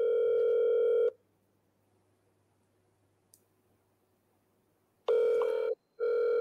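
Telephone ringback tone of an outgoing call, heard through a mobile phone's loudspeaker: a steady buzzing tone that stops after about a second, then silence, then the tone rings again near the end.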